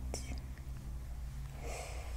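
Soft breathy whisper sounds close to the microphone, a short one at the start and a longer one near the end, over a steady low hum.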